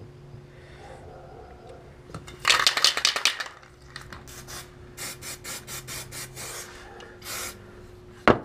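An aerosol can of 2-in-1 gray primer being shaken, the mixing ball rattling inside: a quick run of rattles about two and a half seconds in, then a steadier rattle about three times a second.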